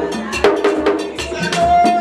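Live Vodou ceremony music: a struck metal bell and drums keep up a steady percussion beat, with a held sung note near the end.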